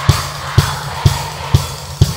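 Live rock band playing: a kick drum on a steady beat about two strokes a second over a held bass line.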